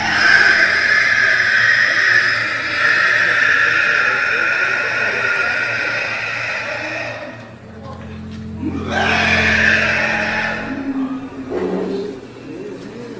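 A man's long, high-pitched, screeching cry, held steady for about seven seconds, then broken off and taken up again in a second, shorter cry. It is an inhuman-sounding scream of the kind heard in skinwalker videos.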